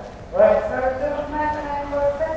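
A man speaking over a public-address system in a large hall, starting about half a second in; the words are not made out.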